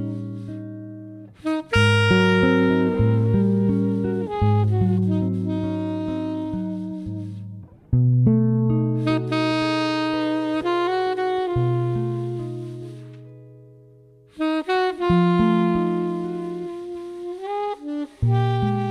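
Jazz recording with guitar and saxophone. Full chords start sharply three times, about a second and a half in, at eight seconds and at fourteen and a half seconds, and each rings on and fades slowly.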